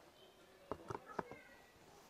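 A quick cluster of four or five light knocks and clicks about a second in, from a rubber-soled hiking boot and cardboard shoeboxes being handled, over faint background voices.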